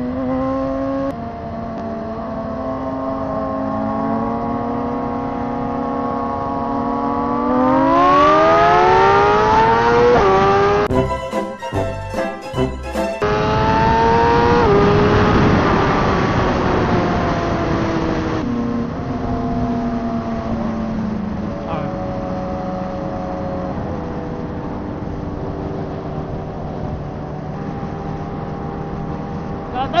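Suzuki GSX-R1000 inline-four engine pulling hard under full throttle, its pitch climbing for several seconds, breaking into a brief choppy stutter about halfway through, then falling away as the throttle closes and settling to a steady cruise.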